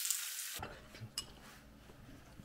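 Meat and shellfish sizzling on a tabletop grill, a steady hiss that cuts off suddenly about half a second in. It gives way to a quiet room with low hum and a couple of faint clicks.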